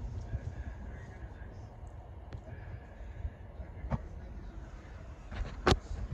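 Quiet low background noise, broken by two short knocks, one about four seconds in and a sharper one near the end.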